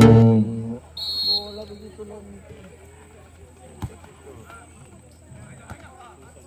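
Music with drums and percussion stops about half a second in, giving way to faint distant shouts and voices of players and spectators on an open football pitch. A short high shrill tone comes about a second in, and a single sharp knock near four seconds.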